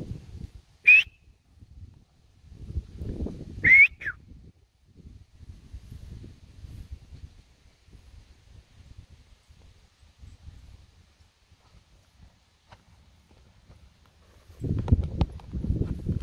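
Two short whistles, each sliding up in pitch, about three seconds apart, over a low uneven rumbling noise that grows heavier near the end.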